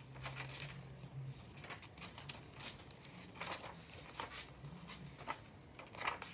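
Vintage paper pages of a handmade journal being turned and handled by hand: a faint, irregular series of short paper rustles and flicks.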